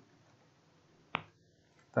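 A single sharp computer click about a second in, such as a mouse button or key, over faint room tone.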